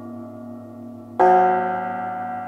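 Concert cimbalom: a struck chord rings and fades, then a new, louder chord is struck about a second in and rings on, its metal strings sustaining.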